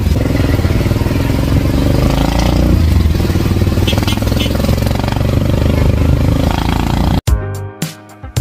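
Motorcycle engine of a tricycle running steadily under way, heard from inside the sidecar. It cuts off abruptly near the end, and plucked guitar music begins.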